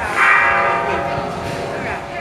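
A loud blaring horn-like tone bursts in just after the start and fades away over about a second.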